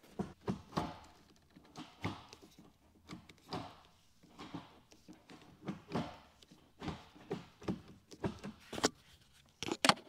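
Gear lever of a Porsche 911 (991.2) manual gearbox with a newly fitted Numeric Racing short shifter being worked through the gates: a string of irregular clicks and clunks as it snaps into each gear, sharpest near the end.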